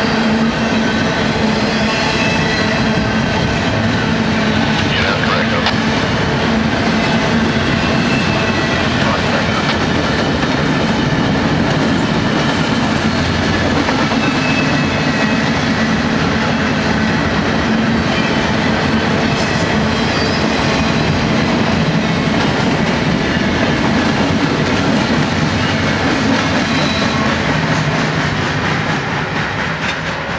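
Long intermodal freight train of double-stack well cars rolling past close by: a steady, loud rumble and clatter of steel wheels on rail, with occasional thin high squeals. It eases slightly near the end as the last cars pass.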